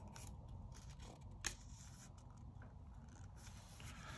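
Faint rubbing and rustling of hands on the paper pages of an open comic book, with one sharp click about one and a half seconds in.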